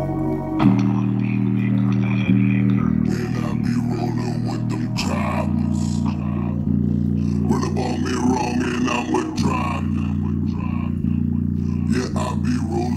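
Rap track played loud through a JBL Charge 4 portable Bluetooth speaker, its long, sustained bass notes stepping between pitches every second or two.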